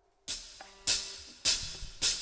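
Drum kit playing evenly spaced cymbal and drum hits, a little under two a second, starting just after a moment of silence: the drummer's lead-in before the band enters.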